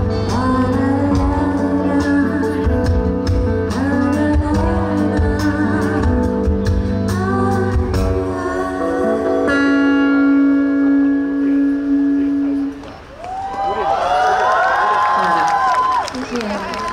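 Live band and singers finishing a song: sung vocals over guitars and drums, ending on a long held chord that stops about 13 seconds in, then the audience cheering and whooping.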